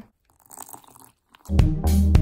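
Faint, brief squishing of thick red slime being kneaded by hand in a glass bowl, then background music with a steady beat and bass comes in about one and a half seconds in and is the loudest sound.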